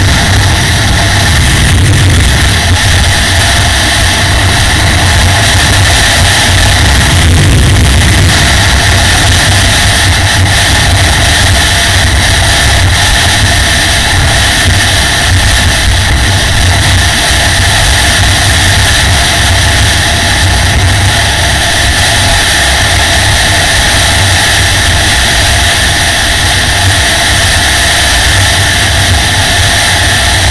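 Yamaha XT660R's single-cylinder engine running steadily at road speed, heard from a helmet camera with heavy wind rushing over the microphone.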